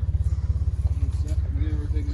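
Side-by-side UTV engine idling steadily, a low pulsing rumble.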